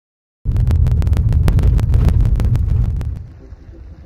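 Longboard wheels rolling fast over pavement, with wind on the microphone: a loud low rumble with many sharp irregular clicks. It starts suddenly about half a second in and drops away about three seconds in.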